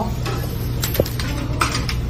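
Steady low background hum, as of restaurant equipment, with a few light clicks and taps. The sharpest comes about a second in.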